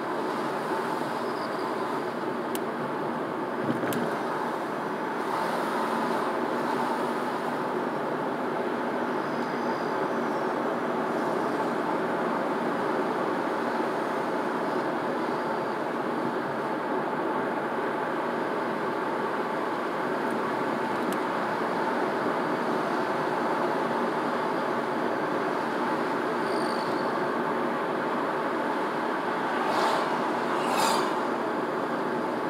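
Steady road noise of a car driving at about 30 mph, heard from inside the cabin: an even rumble of tyres and engine, with a few faint clicks.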